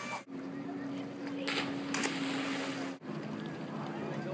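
A boat's motor hums steadily under faint voices across the water, with two short bursts of noise about a second and a half and two seconds in. The hum breaks off abruptly twice and comes back at a different pitch.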